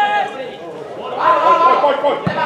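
Men shouting on a football pitch during play. There are two loud calls, one right at the start and a longer one from about a second in.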